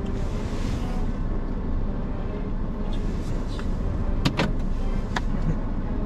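Steady low rumble of a car heard from inside the cabin, with a few sharp clicks about four and five seconds in.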